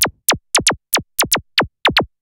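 Korg Monologue analogue synthesizer's self-oscillating filter played as a tone, its envelope sweeping the pitch steeply down on every note: a quick, uneven run of short blippy laser-gun zaps, about five a second, each diving from very high to low.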